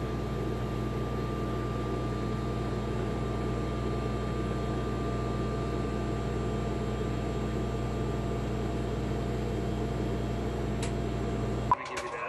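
Steady hum of the International Space Station's cabin ventilation fans and equipment: a constant drone with a few faint, unchanging tones in it. It cuts off suddenly just before the end.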